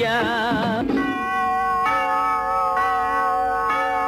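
Old Tamil film song music. For under a second a melody line wavers with heavy vibrato, then it changes abruptly to steady held notes that step to a new pitch about every second.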